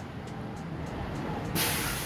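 Low street-traffic rumble, then a loud, short hiss starting about one and a half seconds in.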